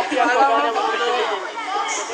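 Several people talking over one another in overlapping chatter.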